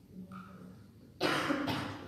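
A person coughs once, a sudden rough burst a little past halfway through, with a second push near the end.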